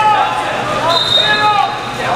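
Indistinct voices of several people echoing across a large gym hall, with short squeaks from wrestling shoes on the mat as the wrestlers move.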